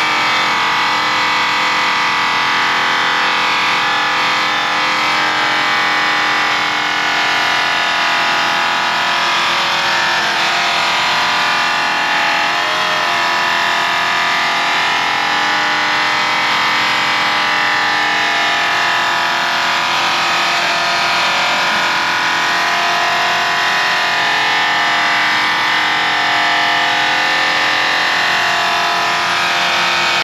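Handheld electric polisher with a buffing pad running steadily against an aluminum fuel tank, a constant motor sound that holds its level throughout.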